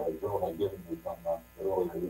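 A man's voice speaking in short phrases over a steady, buzzing electrical hum.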